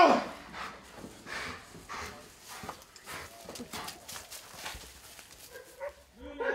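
A police dog panting quickly in short, fairly quiet breaths, worked up from a bite exercise. A man's shout cuts off right at the start.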